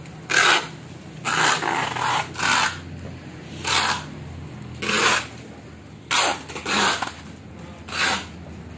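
Packing tape being pulled off the roll in a series of short rasping rips, about one a second, while a potted plant is wrapped.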